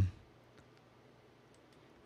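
Near silence: room tone with a few faint clicks, just after a man's voice trails off at the very start.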